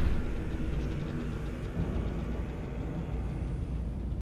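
A low, steady rumbling drone of horror-film sound design, with no words over it.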